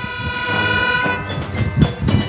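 Marching band brass section holding a long sustained chord for about a second, over low drum beats that come back more strongly near the end.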